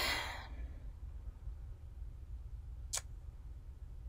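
A soft breath out at the very start, then a steady low hum of room tone with a single sharp click about three seconds in.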